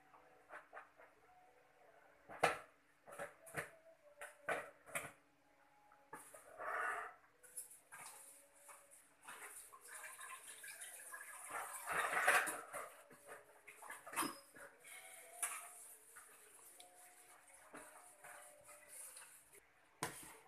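A pot of water spinach simmering on a gas stove, with a few sharp clicks and knocks about two to five seconds in, then a steady faint hiss from about six seconds on.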